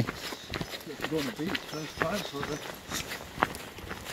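Footsteps walking on a tarmac road, with a voice talking indistinctly over them.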